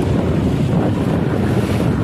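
Wind buffeting the microphone over the rush of sea water around a moving inflatable boat, a steady noisy rumble.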